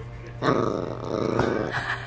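Small dog growling while holding a plush toy in its mouth, one rough growl from about half a second in to near the end.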